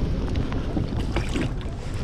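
Steady wind buffeting the microphone, a low rumbling noise, with a few small clicks about a second in.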